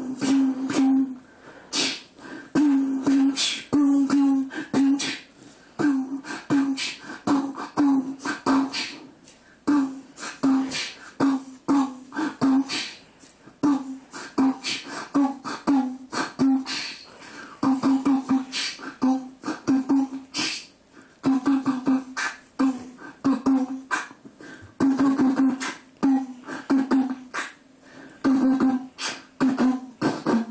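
A person beatboxing into a handheld microphone: sharp clicks and hissing strokes over a low hummed bass note that comes in short pulses, about two a second, in a steady, unbroken rhythm.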